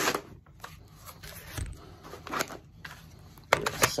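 Polymer rifle magazines being pulled out of a Kydex insert in a plate carrier's kangaroo pouch: scattered plastic rubbing and knocking, a dull bump partway through and a few sharp clicks near the end.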